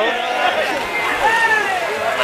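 Voices of a street crowd: people talking and calling out, with one longer call about halfway through.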